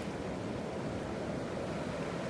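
Steady low rushing noise of wind and surf, even throughout with no distinct events.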